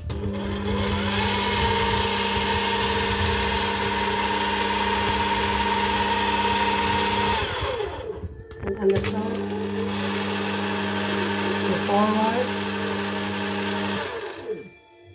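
Philips slow (masticating) juicer's motor running with a steady hum while the auger presses fruit and pushes out pulp. The hum breaks off briefly a little past halfway, then starts again.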